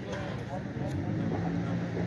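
Several people talking in the background, with a low steady hum underneath that grows more noticeable about halfway through.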